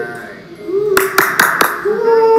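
Four quick, sharp hand claps about a second in, with voices around them.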